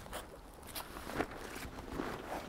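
Faint rustling and a few light clicks of a fabric sling bag and its webbing straps being handled.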